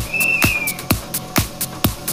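Electronic dance-style background music with a steady kick-drum beat, about two beats a second. A short high held note sounds near the start.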